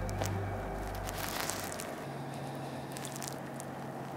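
Background music fading out, then scattered faint crackling rustles of mule deer hooves stepping through dry grass and leaves, with a faint steady low hum under them.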